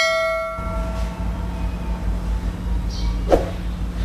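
A bell chime, the sound effect of a subscribe-button animation, rings and fades away within the first half second. After it comes a steady pour of hot water from a stainless electric kettle into a phin coffee filter, over a low steady hum.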